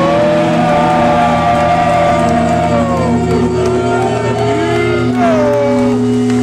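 Loud live rock band: electric guitar and bass hold long sustained notes that bend and slide in pitch, with a couple of falling glides partway through.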